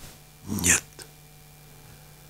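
A man's voice says one short, breathy word about half a second in, followed by a small click. Then quiet studio room tone with a faint, steady low hum.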